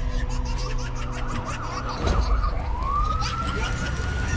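Police car sirens: a fast yelping warble about a second in, then a long wail that rises and holds, over a low rumble.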